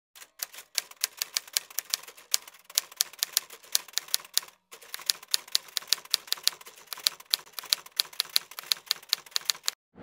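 Typewriter key-strike sound effect: a quick, irregular run of sharp clicks, several a second, with a short pause about halfway through.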